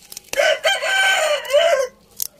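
A rooster crowing once, a single call of about a second and a half.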